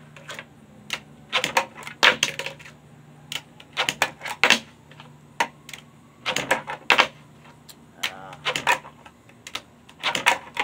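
Tech Deck fingerboard being flicked and landed on a wooden tabletop: quick clusters of sharp clacks as the small plastic deck and wheels strike the wood, coming in bursts every second or two.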